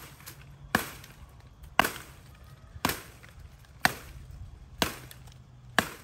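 A machete chopping into woody brush and branches: six sharp strikes, about one a second.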